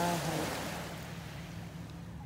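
Small waves washing on the shore: a broad hiss that swells in the first second and then fades, over a steady low hum.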